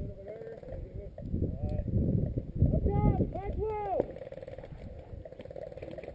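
Unintelligible voices calling out, loudest about three to four seconds in, over a low rumbling noise on the microphone.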